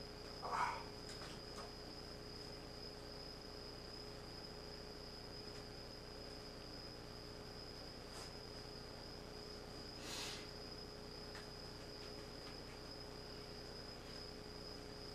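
Quiet room tone: a steady high-pitched whine and a fainter low hum over faint hiss. A short soft sound comes about half a second in, a faint click about eight seconds in, and a brief soft rustle about ten seconds in.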